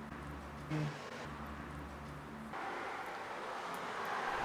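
Faint outdoor background with a steady low hum of distant traffic, turning into a wider hiss about two and a half seconds in.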